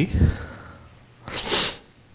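A man's single short, sharp sniff close to the microphone, about halfway through, after a spoken phrase ends.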